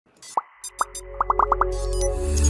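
Electronic intro jingle: about seven short pops that drop in pitch, spaced out at first and then coming quickly one after another, with bright sparkles over a low tone that swells from about half a second in.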